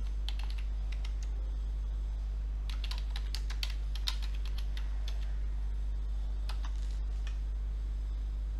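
Typing on a computer keyboard: short keystroke clicks in three scattered bursts, near the start, around the middle and near the end, as a shell command is entered. A steady low electrical hum runs underneath.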